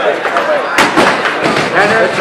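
Two sharp knocks about a quarter-second apart, about a second in, over a voice and the chatter of a large hall.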